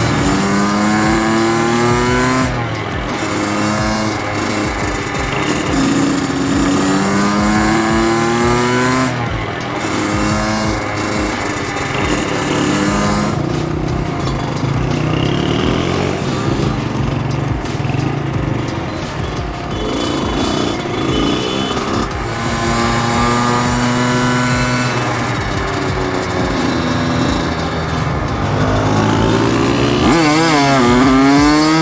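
Kawasaki KX100 two-stroke dirt bike engine revving up through the gears, its pitch rising in several runs of a few seconds each, then dropping back.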